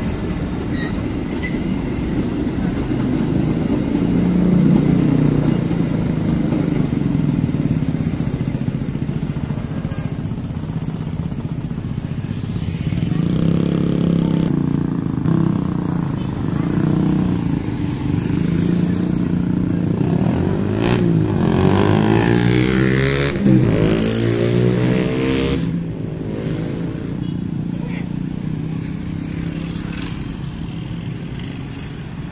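Many small motorcycle engines running and moving off together, revving and passing close by, with their pitch sweeping as they go by about two-thirds of the way through. At the start, the last coaches of a passenger train are rolling past.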